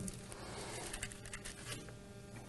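Faint rustling of thin Bible pages being turned by hand at a lectern, a few soft crinkles over a low steady room hum.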